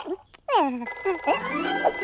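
A cartoon character's falling vocal sound, then about a second in a cartoon telephone starts ringing with a steady high-pitched ring.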